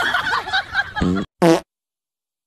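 Dog farting: a run of wavering, pitched farts ending in a short loud one about a second and a half in, after which the sound cuts off suddenly.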